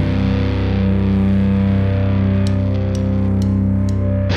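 Distorted electric guitar and bass holding one sustained, ringing chord of heavy stoner rock, with a few faint ticks in the second half.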